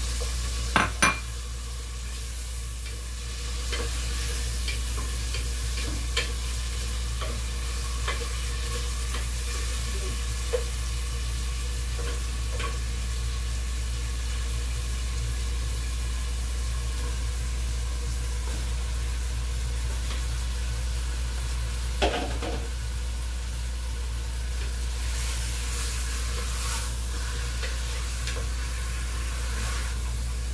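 Garlic and onion sautéing in oil in a stainless steel pot on a gas burner, sizzling steadily while a wooden spatula stirs them, over a steady low hum. A few sharp knocks of the spatula on the pot, two loud ones about a second in and another about two-thirds of the way through.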